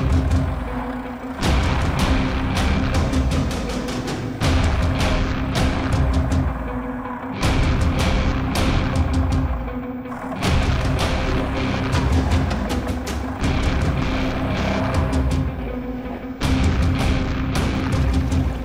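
Background music with heavy bass and sharp percussion hits. The bass drops out briefly every few seconds.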